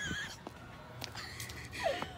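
Mostly quiet, with a brief faint whimper from a person near the end, a short wavering cry that falls in pitch.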